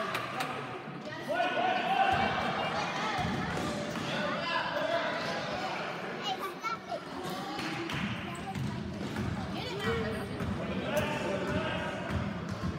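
A basketball bouncing on a gym floor during a children's game, in a large echoing hall, with spectators and young players talking and calling out throughout.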